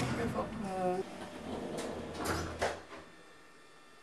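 Lift's sliding doors closing with a few knocks about two to three seconds in, after some brief voices, then a faint steady hum as the lift cabin settles in.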